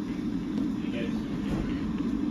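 Electric kettle heating water: a steady low rushing noise as the water works toward the boil.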